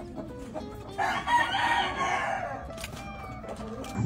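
A gamefowl rooster crows once, one long call starting about a second in and fading out before the halfway point of the third second.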